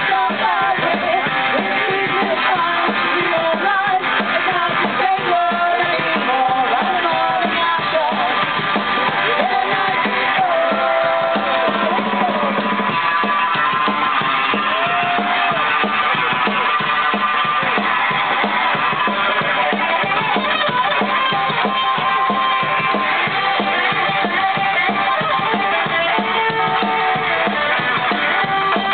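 A live band playing loud and without a break: a drum kit, electric guitar and women singing.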